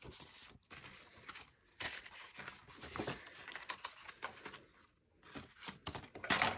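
Faint, scattered rustling and light taps of cardstock cards and envelopes being picked up, slid and set down on a table.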